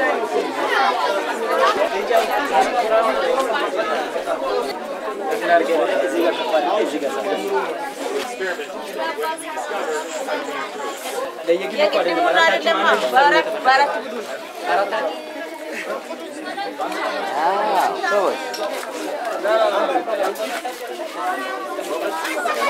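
A group of children chattering, many voices talking at once and overlapping, with no single speaker standing out.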